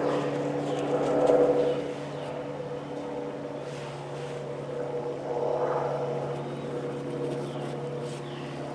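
Soft rustling of potting mix as gloved hands push and press soil around a transplanted seedling in a fabric grow bag, louder twice. Under it runs a steady mechanical hum from a motor or engine.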